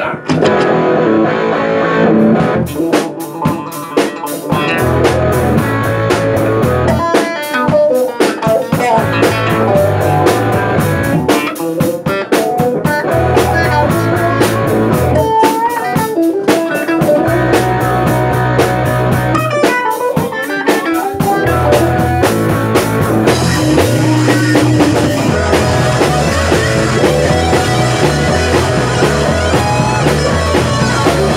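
Rock band playing a song live: electric guitar with drum kit and a stepping low bass line. The drums come in about two and a half seconds in, and the sound gets fuller and brighter in the last few seconds.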